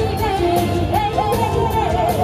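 A woman singing an Asian pop song into a microphone over amplified backing music with a steady beat.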